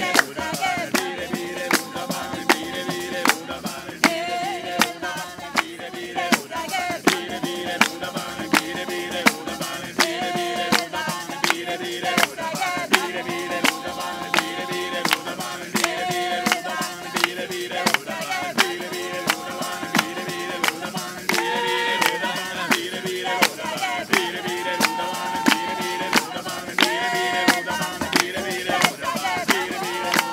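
Several voices singing an Occitan song together in harmony, over a steady beat of hand claps and a hand-struck frame drum with jingles.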